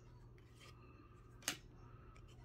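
Quiet handling of a stack of trading cards, with one sharp click about a second and a half in as a card is flicked from the front to the back of the stack.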